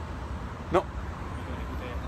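Steady low rumble of road traffic passing along a nearby road.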